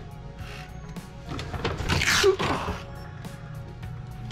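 Background music, with a short hissing burst about two seconds in.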